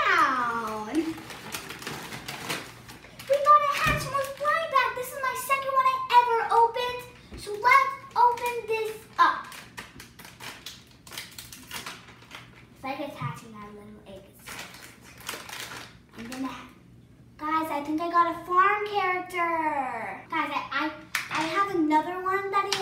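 A young girl's voice, squealing and talking on and off without clear words, with crinkling and tearing as a small blind-bag packet is opened by hand.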